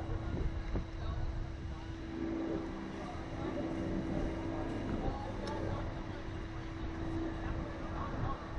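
Steady machine hum with a constant mid-low tone and a low rumble underneath, from the SlingShot ride's machinery while the rider waits in the seat.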